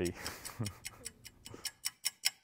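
Steady, even ticking at about five ticks a second, growing louder near the end, with a man's brief voice or laugh in the first part.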